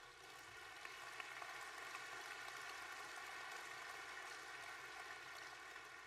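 Audience applauding, a steady, fairly faint patter of many hands clapping.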